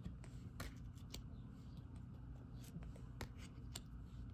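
Oracle cards being flipped by hand, a few light clicks and slides as cards come off the top of the deck, over a faint low hum.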